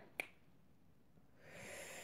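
A single sharp click just after the start, then a quiet pause, then a soft breath drawn in over the last half second.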